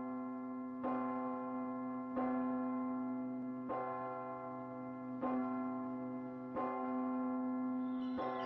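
A large hanging bell tolling steadily, struck five times about a second and a half apart, each stroke ringing on into the next.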